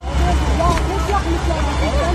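Several bystanders' voices talking over one another above a loud, continuous low rumble, with a few sharp clicks.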